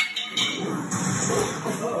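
Television film soundtrack playing in the room: a sharp hit at the start, then a dense, busy mix of music and sound effects.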